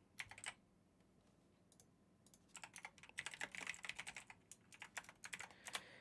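Faint typing on a computer keyboard: a few keystrokes right at the start, then a quick run of keystrokes from about halfway through until just before the end.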